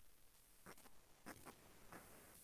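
Near silence: faint room tone with three soft, short clicks or taps spread over about two seconds.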